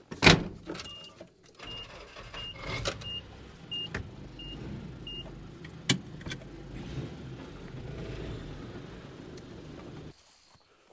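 Pickup truck: a loud thump like a door shutting just after the start, then seven short, evenly spaced warning-chime beeps over about four seconds, while the engine runs with a low rumble and the truck pulls away. There is a single sharp click about six seconds in.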